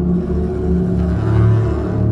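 Dark ambient film score: a low sustained drone with a swelling rush of noise that builds and peaks about one and a half seconds in, then falls away.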